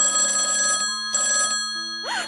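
Telephone bell ringing in two bursts, a long ring and then a shorter one after a brief pause.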